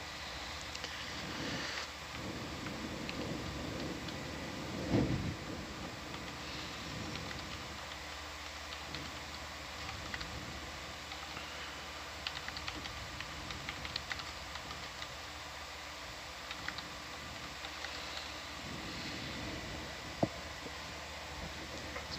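Steady electrical hum and hiss of control-room equipment, with scattered light clicks of keyboard typing, a dull thump about five seconds in and a sharp click near the end.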